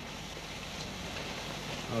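Steady, low outdoor background noise with a faint hiss and a low hum; no distinct event stands out.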